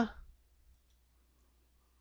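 A single faint computer-mouse click about a third of the way in, over a low steady hum, as a woman's voice trails off at the start.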